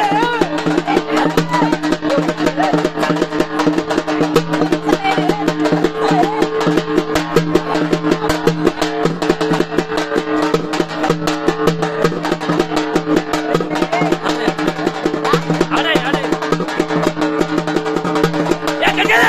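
Music with fast, busy drumming over a steady held drone, with a voice singing in the first few seconds and again near the end.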